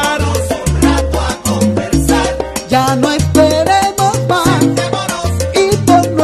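Salsa music in an instrumental passage with no singing: a bass line repeating a syncopated pattern under dense percussion and a melodic lead.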